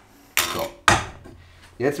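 Steel parts of a bushing-press kit, a threaded rod and pressing cups, scraping as they are pushed through a trailing-arm bushing, then one sharp metal clank just under a second in.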